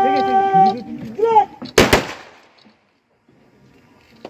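A ceremonial rifle volley: a line of soldiers fires once in unison about two seconds in, a single sharp crack with a short echoing tail, as part of a funeral gun salute. Before it come a long drawn-out shouted drill command held on one note and a short sharp command.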